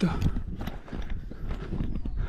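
Footsteps on a loose rocky, gravelly volcanic trail: a string of uneven crunching steps from a hiker walking uphill.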